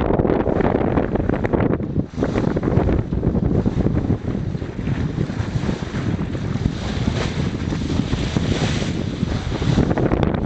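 Strong wind buffeting the microphone over water rushing and splashing along the hull of a Bavaria 36 sailing yacht moving under sail, with a brief lull about two seconds in.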